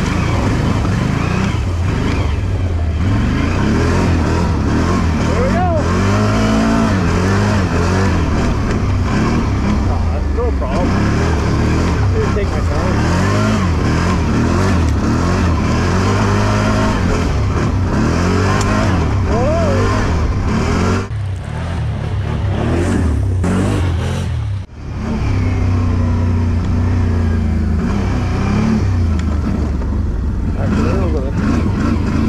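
Can-Am Outlander 570 XMR ATV's V-twin engine running under load in four-wheel drive, revs rising and falling as it climbs. The sound drops away briefly twice about two thirds of the way through.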